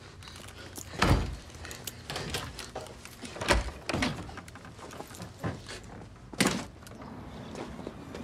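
A wooden door being opened and shut, with several heavy thuds, the loudest about a second in, around three and a half seconds and near six and a half seconds, amid small clicks, shuffling steps and clothing rustle.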